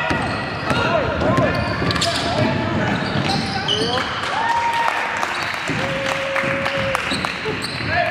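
Basketball game in a gym: a ball bouncing on the hardwood court, sneakers squeaking and indistinct voices calling out. A sustained squeal runs for about a second near three quarters of the way through.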